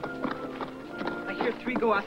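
Hooves of several horses clip-clopping on dry ground as a small group of riders moves along, over orchestral film music with held notes. A man's voice starts speaking in the last half second and is the loudest sound.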